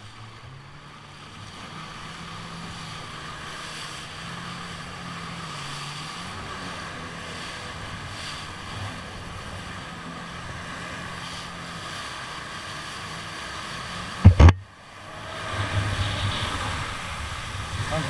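Jet ski engine picking up speed as it pulls away, then running steadily, with water rushing past and wind on the microphone. About fourteen seconds in, a sharp, loud thump, after which the rush of water and wind grows louder.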